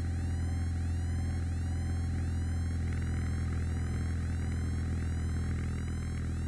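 Steady drone of a Piper PA-28 Warrior's engine and propeller heard in the cabin. Over it runs an electronic music track with a rising sweep repeating about twice a second.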